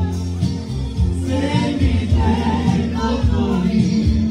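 Live Roma band playing: a man singing over electric guitar, bass guitar and clarinet, with a steady beat.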